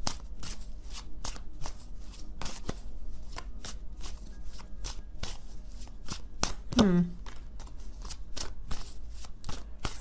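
A deck of tarot cards being shuffled by hand: a continuous run of quick card snaps and flicks, with a brief sound of the reader's voice about seven seconds in.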